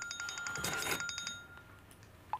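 Mobile phone ringing with a rapid pulsing electronic ringtone of about ten beeps a second, which cuts off about a second and a half in as the call is taken. A brief noisy burst comes over the ring just before it stops.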